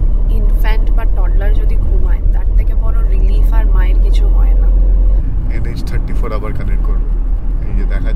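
Steady low rumble of a moving car heard from inside the cabin of a Tata Tiago diesel hatchback, under a woman talking; the rumble eases a little about five seconds in.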